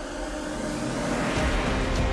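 DJI Avata cinewhoop drone's ducted propellers whirring steadily in flight, the sound building about a second and a half in as it dives low.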